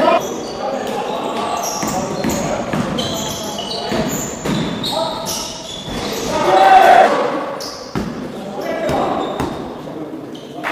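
Basketball game in a large, echoing hall: a ball bouncing on the wooden court, short high squeaks, and players' voices, loudest about seven seconds in.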